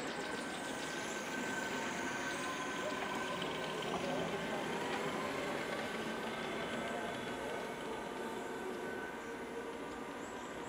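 Distant voices over a steady outdoor background noise, with no sudden sounds.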